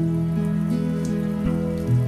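Shower water running, under soft background music of long held notes.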